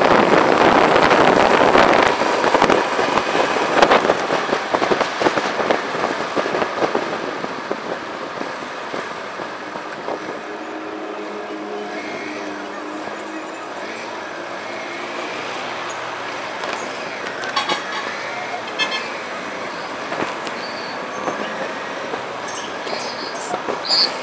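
A motorcycle underway, heard from a camera mounted on the bike: rushing wind noise and engine running, loud for the first several seconds and then settling to a quieter steady running with surrounding street traffic.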